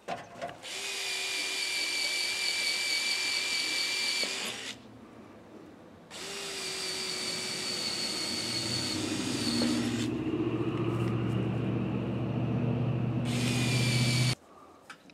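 Power drill boring through a stack of metal roofing panels, running in long steady whining runs: two of about four seconds each with a pause between, and a short third run at the end. A low hum builds underneath in the second half.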